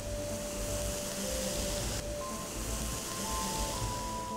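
Waterfall pouring down a rock face, a steady rushing hiss, under background music of long held notes.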